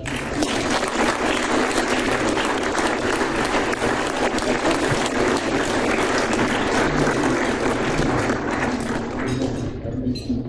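Audience applauding: steady clapping that begins right after a speech ends and dies away near the end.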